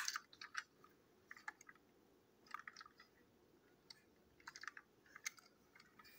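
Faint, scattered small clicks and rustles of a plastic toy engine being turned over in the fingers.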